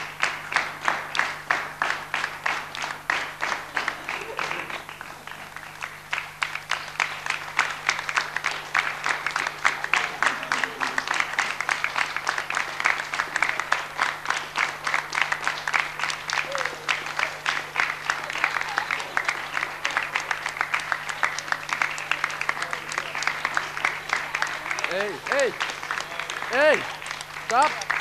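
Studio audience applauding, with steady dense clapping throughout, and a couple of voices calling out near the end.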